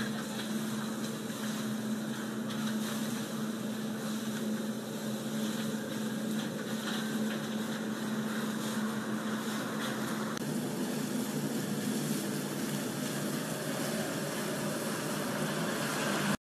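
Steady kitchen ambience at a tantuni pan: meat sizzling on the hot steel pan as an even hiss, over a constant low machine hum, with a few faint clicks.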